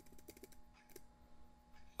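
Faint clicks from a computer keyboard and mouse: a few quick keystrokes near the start and another click about a second in, as PowerPoint shortcuts are pressed.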